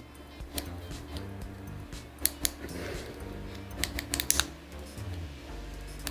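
Soft background music with scattered sharp clicks from a gold tube of lip balm-gloss being handled and opened. The strongest clicks come a little over two seconds in and again around four seconds in.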